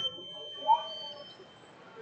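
The end-of-period timer tone trailing off faintly in the first second, with a short shout about two-thirds of a second in, over the low murmur of a large gym hall.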